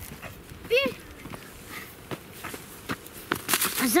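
Scattered footsteps and small clicks of people walking on a sandy, stony path, with one short voice-like sound that rises and falls in pitch about a second in.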